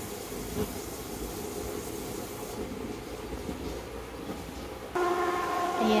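Vinyl cutting plotter running as it cuts, an even fluttering mechanical noise of its motors and cutter head. About five seconds in, a louder steady motor whine with several pitches starts suddenly as the cutting job finishes.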